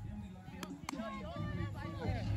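Faint, distant voices of players talking and calling out across an open field, with two short sharp clicks about halfway through.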